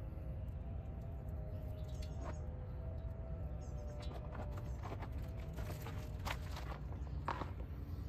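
Low, steady outdoor rumble with faint bird chirps; in the second half a string of sharp clicks and crackles as a burning tinder bundle is handled and dropped into a small metal stove.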